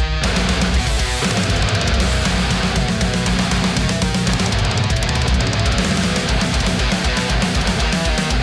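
High-gain distorted electric guitar playing a fast metal riff with rapid repeated strokes and a heavy low end, through an EVH 5150 III 50-watt EL34 tube amp head. The amp is recorded direct through a Universal Audio OX Amp Top Box load box, not a room microphone.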